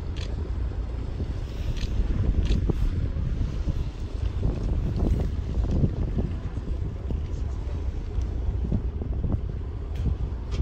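A cruise boat's engine running with a steady low rumble, with wind buffeting the microphone and a few brief knocks and splashes.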